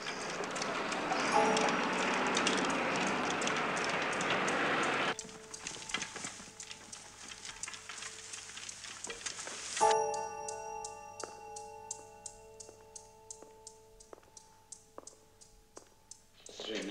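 Film soundtrack: a dense wash of noise for about five seconds that cuts off abruptly, then a tense music score of sustained chords over a steady ticking, about two to three ticks a second.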